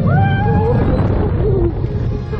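Spinning roller coaster car running on its track, a steady low rumble of wheels and wind, with a high, wavering wail rising and falling over it for the first second and a half.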